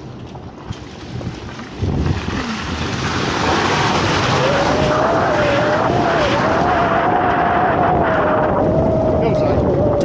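Truck engine pulling hard under throttle on a muddy dirt trail, with tyre and wind noise. It swells about two seconds in, then holds loud and steady, with a wavering whine over it from about four seconds in.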